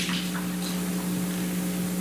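Steady electrical hum with an even hiss underneath: the background noise of a recorded video deposition.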